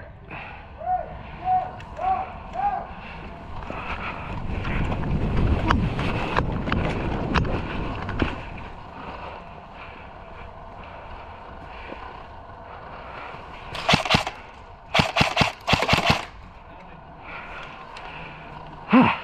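Airsoft gun firing about five short, sharp bursts in quick succession over some two seconds near the end. Earlier, a few short chirping tones and a stretch of low rumble.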